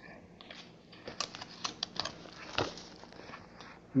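Pages of a Bible being leafed through and handled at a lectern: a string of soft paper rustles and small clicks over about two seconds, starting about a second in.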